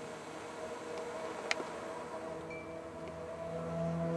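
Pickup truck engine idling, a steady hum that grows louder near the end; a single sharp click about one and a half seconds in.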